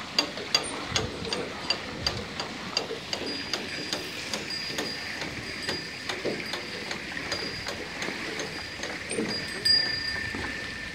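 Bullock-driven Persian wheel turning: its iron gear wheel clicking about three times a second, the clicks thinning after the first few seconds. A thin high squeak comes and goes, and a lower squeal sounds near the end.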